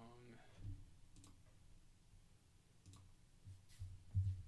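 Near silence broken by a few faint computer clicks at the keyboard and mouse, one every second or so, after a brief voiced hum at the very start.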